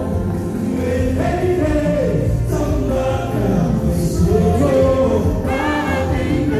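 Live gospel song through a church PA: a male lead singer on a handheld microphone with other voices singing along, over amplified backing with a strong, steady bass.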